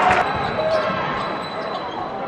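Basketball being dribbled on a hardwood court over steady arena crowd noise with voices and shouts.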